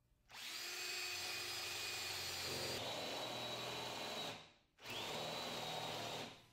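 Handheld power drill spinning a paddle bit down into a wooden board to bore a countersink recess. It runs steadily for about four seconds, cuts out briefly, then runs again near the end.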